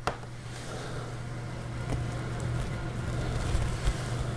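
A steady low hum under faint handling noise and small ticks as a thin steel dropper-post cable is fed by hand through a small fitting, with one sharp click right at the start.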